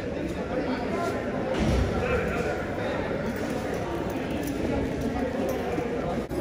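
Indistinct talking of several people in a large indoor hall, no words clear, with a single low thump a little under two seconds in.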